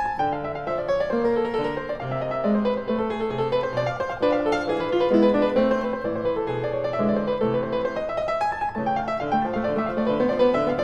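Background piano music: a steady, unbroken run of notes over a moving bass line.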